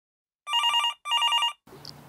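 Telephone ringing: two short trilling rings, each about half a second long, with a brief gap between them.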